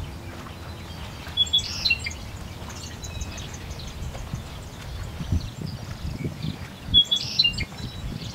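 Birds chirping outdoors in two short bursts, one about a second and a half in and one near the end, over a steady low rumble with a few dull knocks.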